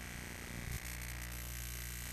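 A faint steady low hum with a thin hiss over it.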